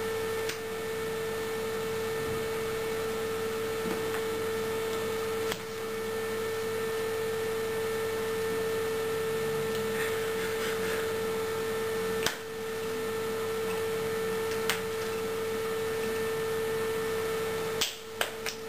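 A steady electronic tone, like a hum, held at one pitch, with a few short clicks breaking through it.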